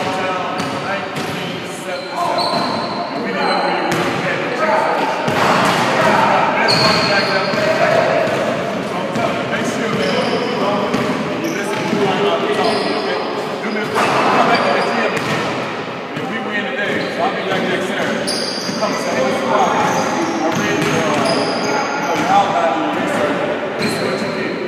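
A man talking to a group in an echoing gym, his speech running on without a break, with repeated thuds like basketballs bouncing on the hardwood floor behind it.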